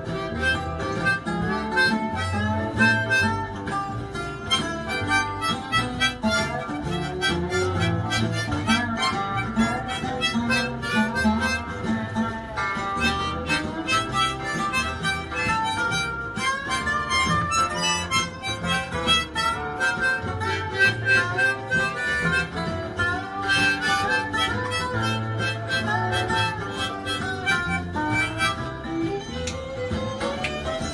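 A harmonica played continuously in melodic phrases over guitar accompaniment.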